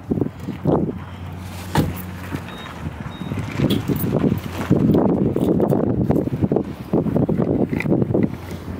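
Outdoor parking-lot sound: a vehicle engine hums steadily and stops about two and a half seconds in, with wind buffeting the microphone in gusts, strongest in the second half. There is a single sharp click near two seconds.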